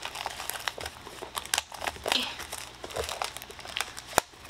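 Plastic shrink-wrap on a Pokémon Elite Trainer Box crinkling and crackling in irregular sharp bursts as fingers pick and pull at it, struggling to get the wrap open.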